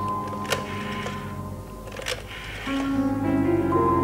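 Background music of long held tones that swells louder near the end. Two sharp clicks, about half a second in and two seconds in, come from a desk telephone being dialled.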